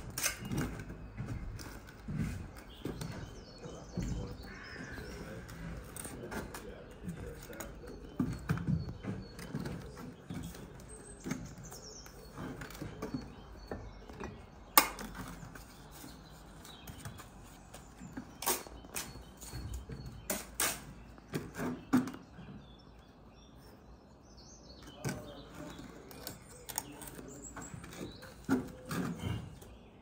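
Bricklaying by hand: a steel trowel scraping and clinking on bricks and lime mortar, with scattered sharp knocks as bricks are picked up, set on the bed and tapped down.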